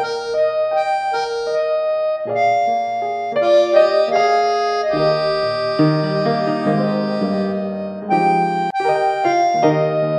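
Background music: a gentle electric piano or keyboard tune playing sustained notes in a slow melody over soft chords.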